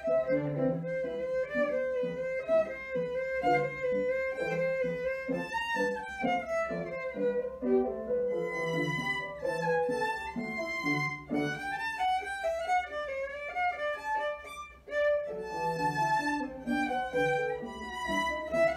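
Solo violin played with the bow, a flowing melody of linked notes, over lower accompanying notes that sit beneath the violin's range. There is a short break in the phrase about fifteen seconds in.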